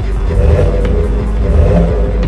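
A car engine revving, swelling twice, over background music.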